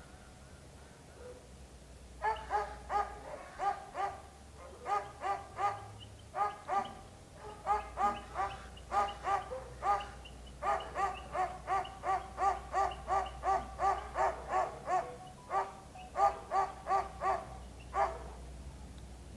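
A dog barking repeatedly in quick runs of several barks, about three a second, starting about two seconds in.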